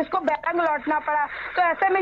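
Speech only: a woman reporter talking in Hindi over a remote video-call link.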